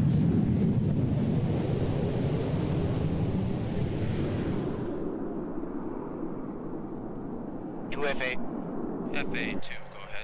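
Jet engines of two F-16 fighters at takeoff power as they lift off, a loud rumble that fades away over the first five seconds. After that a steady high tone runs on, with two short bursts of radio voice near the end.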